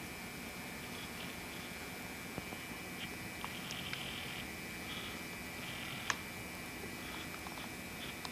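Faint steady hiss and hum from an old camcorder recording an empty room, broken by a few small clicks and one sharper tick about six seconds in.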